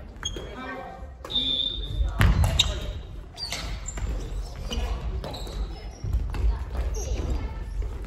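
Badminton rally on a wooden gym court: rackets striking the shuttlecock in a few sharp cracks, feet thudding on the floor and shoes giving short high squeaks, in a reverberant hall with voices around.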